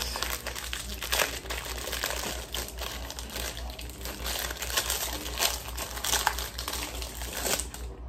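Clear plastic ice-pop wrapper crinkling and crackling irregularly as it is worked open and peeled off a frozen strawberry fruit bar.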